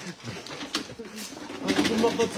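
Indistinct low voices murmuring in a busy shop, with a couple of light clicks.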